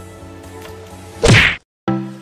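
Faint background music, then a little over a second in a short, loud whoosh-and-hit transition sound effect, a split second of silence, and a new outro tune of plucked notes starting just at the end.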